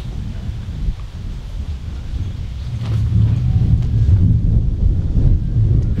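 Wind buffeting a microphone outdoors: an uneven low rumble that grows louder about halfway through.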